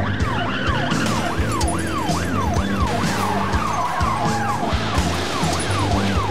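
Police car siren sweeping up and down about twice a second, over background music.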